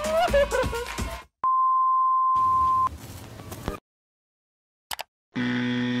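Background music cuts off about a second in and is followed by a steady high electronic beep lasting about a second and a half. After a gap of silence comes a short click, then a brief low buzzy synth tone near the end.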